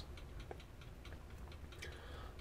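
Faint, regular ticking over a low, steady room hum.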